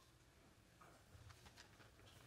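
Near silence: quiet auditorium room tone with a low hum, and a few faint small clicks about halfway through.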